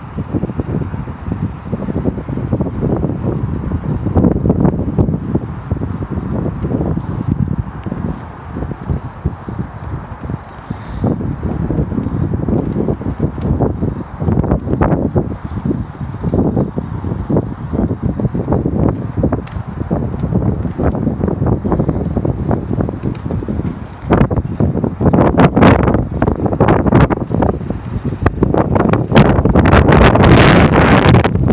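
Wind buffeting the microphone: an uneven low rumble that comes and goes in gusts, growing stronger over the last few seconds.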